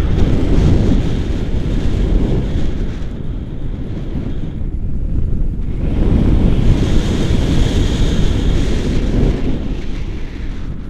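Wind buffeting the microphone of a camera held out on a selfie stick during a tandem paraglider flight: loud, rumbling wind noise that eases off a little in the middle and builds again.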